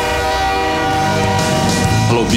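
Train horn sounding a long, held chord that fades near the end, while the low rumble of a passing train builds from about a second in.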